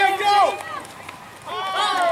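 People's voices calling out and shouting, with no clear words: a burst at the start and another near the end, quieter in between.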